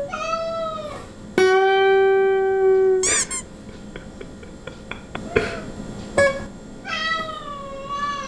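A cat meowing in long, drawn-out calls. One is held on a steady pitch for about a second and a half, and the others fall in pitch near the start and near the end, with a short high squeak in the middle. Under the calls, an acoustic guitar is fingerpicked softly.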